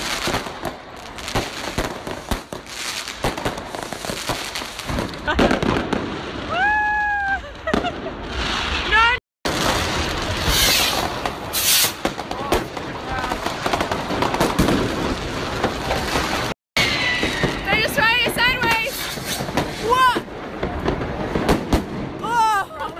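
Consumer fireworks, rockets and firecrackers, going off close by in a near-continuous string of cracks, pops and bangs, broken twice by a brief silence.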